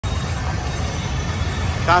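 Steady low rumble of street traffic noise on a city street, with a voice starting just at the end.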